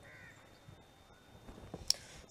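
A bird calling faintly once near the start over low background noise, then a single sharp click near the end.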